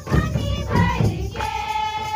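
A group of women singing together to the beat of a large double-headed drum, holding a long note in the second half.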